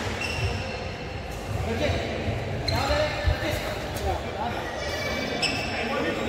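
Indoor badminton play in a large, echoing hall: sharp racket-on-shuttlecock hits and thuds, short squeaks of court shoes (near the start, about three seconds in and near the end), and players' voices calling out.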